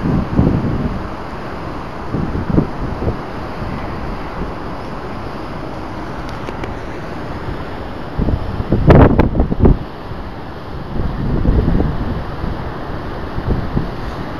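Wind buffeting the microphone in low gusts over a steady background rumble, loudest about two-thirds of the way through.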